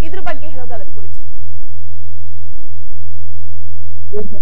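Loud, steady low electrical hum on the audio line, with faint high steady tones above it, heard during trouble with the phone connection. A woman's speech trails off in the first second and a half, after which the hum is left on its own.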